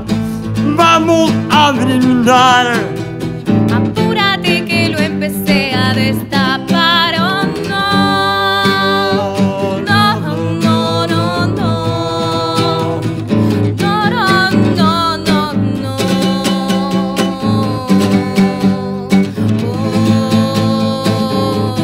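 Live acoustic song: a nylon-string classical guitar accompanies a voice singing a wavering melody, with steady held notes in the middle.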